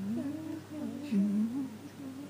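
A woman humming, her pitch gliding up and down in short phrases with brief breaks.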